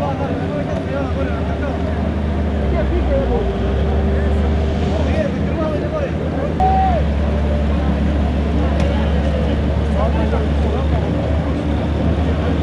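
Boat engines running steadily under a babble of many people's voices; the engine hum grows louder about six and a half seconds in.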